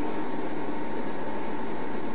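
Steady background hiss with a faint high whine, heard during a pause in the speech over the sound system.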